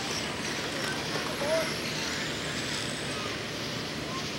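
Electric RC late-model dirt oval cars with 17.5-turn brushless motors running laps on a clay track: a steady hiss of tyres and drivetrains with a faint high motor whine.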